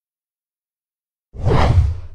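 Silence, then, a little over a second in, a sudden logo-sting whoosh sound effect with a deep low end, fading off near the end.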